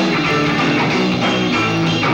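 Electric guitar playing live with a rock band, loud and continuous.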